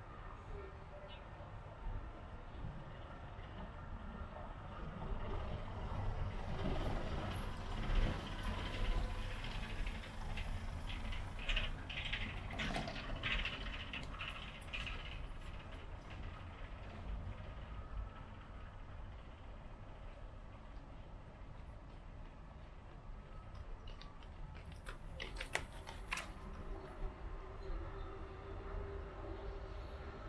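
Outdoor city traffic by a river: a steady low rumble, with a vehicle passing that swells in and out over several seconds, loudest about eight seconds in. A few sharp clicks come near the end.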